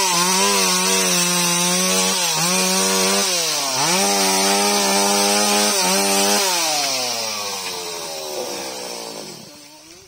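Two-stroke chainsaw running at high revs, its pitch dipping briefly a few times as it bogs under load in the cut. Over the last few seconds the revs fall away steadily and the sound fades as the engine winds down.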